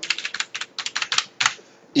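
Typing on a computer keyboard: a quick run of about a dozen keystrokes that stops about a second and a half in.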